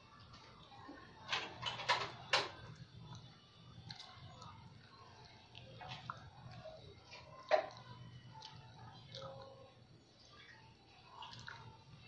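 Close-miked wet chewing and lip smacks from eating puto bumbong, a sticky purple rice cake, with scattered sharp mouth clicks; the loudest come in a cluster about one and a half to two and a half seconds in and once more past the middle.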